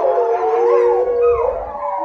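A pack of wolves howling together: several long howls overlapping at different pitches, some held steady and some rising and falling.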